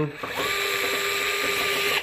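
DeWalt DCF682 8V gyroscopic cordless screwdriver running fast, a steady motor whine with a high gear hiss, driving a 5/16 hex screw back into a service panel. It starts about a third of a second in and stops right at the end.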